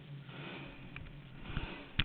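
Rustling handling noise on a motorcycle-mounted camera, with a few low bumps near the end and a sharp click at the very end as the recording stops.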